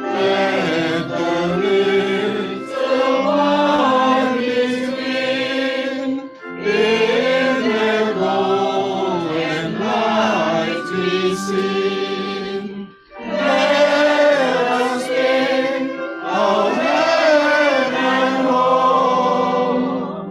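A group of voices singing a hymn together, in phrases with short pauses about six and thirteen seconds in.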